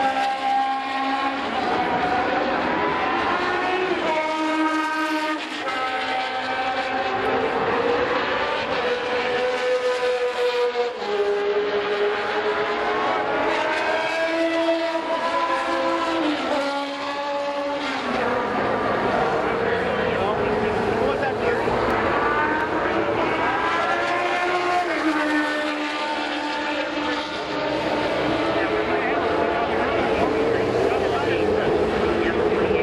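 Vintage Formula 1 race car engines running and revving, their pitch rising and falling in long smooth sweeps, with more than one engine heard at once.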